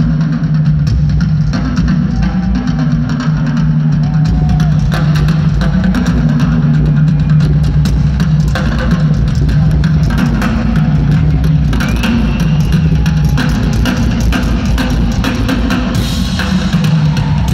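Rock drum kit played live in a drum solo: rapid, dense drum and cymbal hits with bass drum, over a steady low drone.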